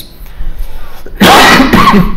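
A man sneezing once, loudly: a short breath in, then a noisy burst starting a little over a second in.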